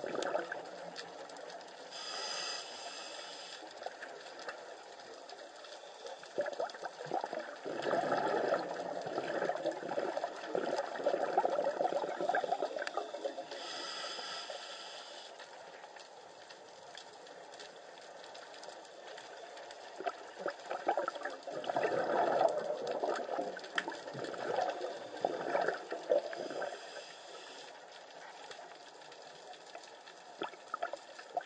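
Scuba regulator breathing heard underwater: three short hissing inhalations about twelve seconds apart, each followed by a longer burst of gurgling exhaled bubbles.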